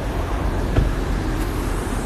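Steady low rumble with a faint hiss, like road or traffic noise, picked up by a phone's microphone, with one faint click a little before halfway.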